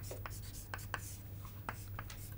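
Chalk writing on a chalkboard: a string of short taps and scrapes. A low steady hum runs beneath.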